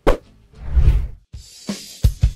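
Edited transition sound effects: a sharp hit, a low swelling whoosh, then a rising hiss that leads straight into drum-beat music.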